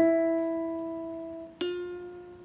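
The E on a piano and the high E string of a nylon-string guitar sounded one after the other for comparison, each ringing and fading. The second note starts about a second and a half in and sits slightly higher. The guitar string is out of tune and sharp, "quite a bit higher" than the piano's E.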